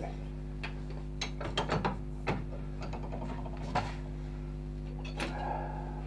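Metal bench vise being worked by hand: a string of light metallic clicks and scrapes from the handle and jaws, bunched in the first couple of seconds and then a few more spaced out, over a steady electrical hum.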